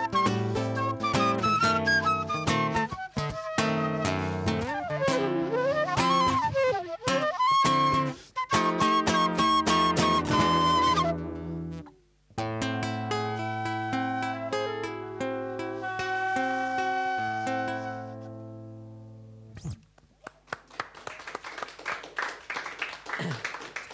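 Transverse flute and acoustic guitar playing an instrumental passage, the flute sliding down and back up in pitch in one run. The music breaks off for a moment about halfway, starts again, and dies away a couple of seconds before the end.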